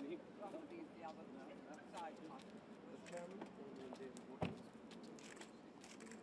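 Faint murmur of several people talking, with one sharp thud of a car door being shut about four and a half seconds in.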